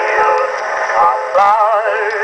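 Man singing with band accompaniment, played from an Edison Diamond Disc record on an Edison S-19 phonograph. The sound is thin, with no deep bass, and a held note wavers with a wide vibrato near the end.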